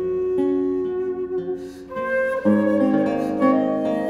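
A baroque wooden transverse flute (traverso, by Martin Wenner) and a theorbo (by Jiří Čepelák) playing a slow melody together, the flute holding long notes over plucked theorbo chords and bass notes. A phrase dies away briefly about halfway through, and a new, louder phrase starts with deep plucked bass notes under the flute.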